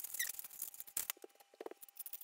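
Hand-twisted salt grinder cranked over a bowl of salad, giving a rapid run of small dry clicks that stops shortly before the end.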